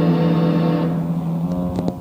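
Closing sustained drone of a live band's amplified electric instruments: a steady low hum with many overtones, its upper tones dropping away about a second in and the whole drone dying out near the end, with a few faint clicks.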